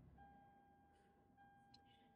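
Near silence, with only a very faint steady tone in the background.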